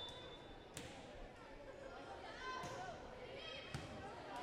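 Volleyball being struck, two sharp smacks about a second in and near the end, over faint chatter of players and spectators.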